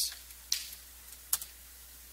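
Two sharp clicks, under a second apart, from a key or presentation clicker advancing the slides, over a low steady room hum.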